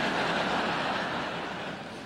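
Large theatre audience laughing, a wash of crowd noise that is loudest near the start and slowly dies away.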